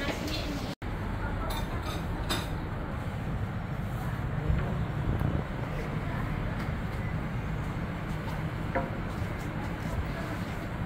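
Doughnuts frying in a wide pan of hot oil: a steady sizzle over a low traffic rumble, with a few light clinks of a utensil on the pan. The sound cuts out briefly just under a second in.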